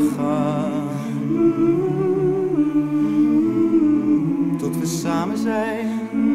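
A small vocal group humming sustained chords in close harmony, unaccompanied, the held notes wavering with vibrato.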